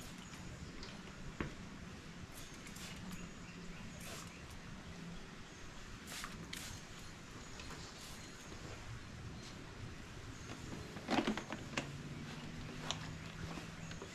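A hand-held sprayer wand fed by a coiled hose from a gallon jug, giving short faint bursts of spray as peppermint rodent repellent is misted into a car's engine bay. A faint steady low hum runs underneath.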